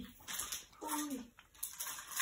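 A short pause in speech, broken by one brief falling voiced sound from a person about a second in and a faint click just after it.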